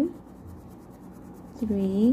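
Wax crayon rubbing back and forth on paper, coloring in a square of a worksheet, faint.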